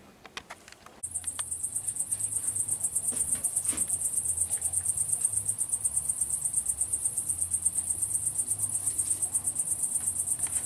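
Cricket chirping in a steady, fast-pulsing, high-pitched trill that starts suddenly about a second in.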